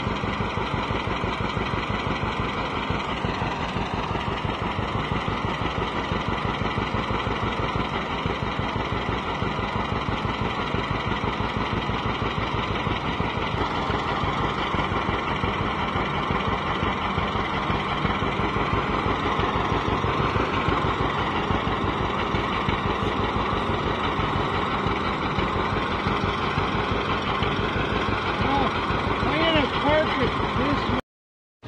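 John Deere 60's two-cylinder engine idling steadily, a fast, even pulsing beat.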